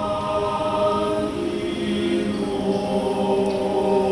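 Mixed choir of men's and women's voices singing long, sustained chords, with new notes entering about halfway through.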